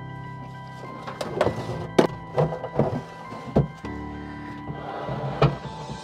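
Background music with a string of about seven knocks and thuds, the loudest about two seconds in and near the end. The knocks come from the fuel cell's plastic casing being worked loose and lifted out of a boat's locker.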